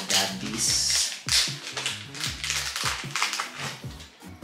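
Background music with deep, sliding bass notes. Over it comes loud, irregular crinkling and rustling of small packaging being handled and opened.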